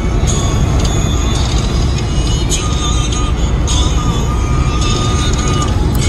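Steady road and engine noise inside a moving car's cabin, a loud low rumble, with background music over it.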